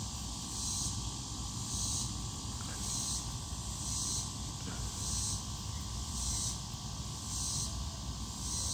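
A chorus of insects: a high buzzing hiss that swells and fades about once a second.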